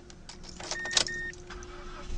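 Ignition key jingling and clicking in a 2012 Mazda 2 as it is turned on before starting, with two short electronic beeps from the dashboard about a second in.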